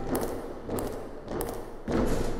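A steady beat of thumps, about one every 0.6 seconds, with no other instruments playing between the strokes.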